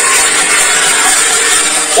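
A small band playing, dominated by a dense, continuous wash of crashing cymbals and shaken percussion.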